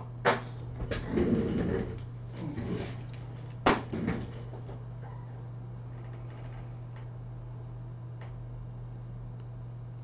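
Two sharp knocks from handling on the workbench, about three and a half seconds apart, with a brief low voice-like sound between them, over a steady low electrical hum.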